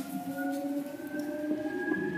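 Seibu 2000 series electric train running, with a whine of several tones that rise slowly and steadily in pitch as the train gathers speed, over a low rumble.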